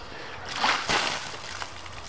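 Ice water splashing down over a person's head and bare body as a stainless steel stockpot of it is tipped out. A short rush of pouring and splatter comes about half a second in and tails off after a little over a second.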